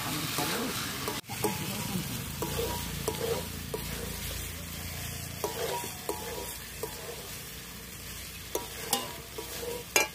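Potatoes coated in masala sizzling in oil in a metal wok, with a metal spatula scraping and tapping the pan as they are stirred.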